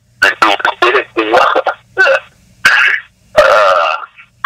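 Only speech: a person talking in short phrases over a telephone conference line.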